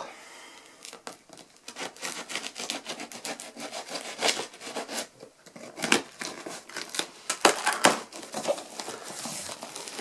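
A knife slitting the packing tape along the seam of a cardboard box, with irregular crackling, tearing and scraping of tape and cardboard. The crackles start about a second in and come unevenly throughout.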